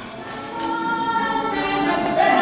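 A choir singing long held notes, coming in about half a second in and growing louder.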